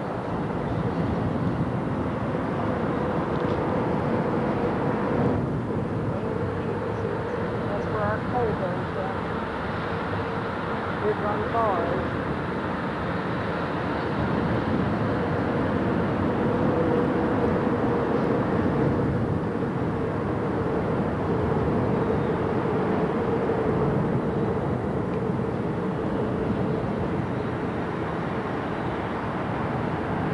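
A riverboat's engine running steadily with a low hum, mixed with wind noise on the open deck; indistinct voices come and go in the background.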